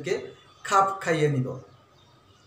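A man's voice speaking a short phrase, then a pause of quiet room tone.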